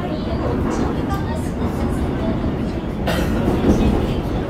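Subway train running along the track, heard from inside the passenger car: a steady low rumble. About three seconds in, a sudden rush of higher-pitched noise comes in on top of it.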